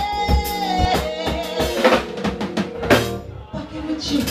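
Live band with a drum kit playing while a female singer holds long sung notes into the microphone, the first note stepping down to a lower one about a second in. The music thins out and drops in level near the end.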